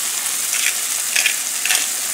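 Zucchini chunks sizzling in melted butter in a stainless steel sauté pan: a steady frying hiss with a few short crackles about half a second apart.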